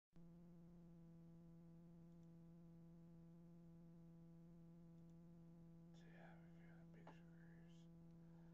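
Faint steady buzzing hum at one unchanging pitch with overtones. Faint rustling noises come in over it in the last two seconds.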